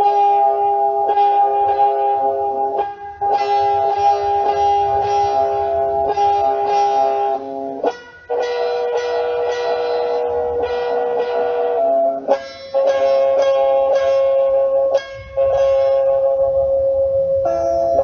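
Instrumental music without singing: a series of held chords, each sounding for a few seconds, with short breaks as one chord gives way to the next.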